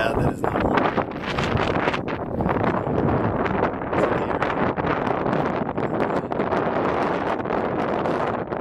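Wind buffeting the microphone in a constant rough rush with many quick gusts.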